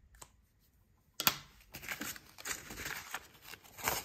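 A sharp click about a second in, then irregular rustling and crinkling as paper banknotes and a clear plastic binder pocket are handled.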